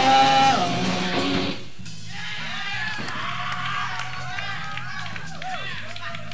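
A live punk rock band with electric guitars plays the last loud chord of a song and cuts off about a second and a half in. The amplifiers then hum steadily under scattered shouts and whoops from the audience.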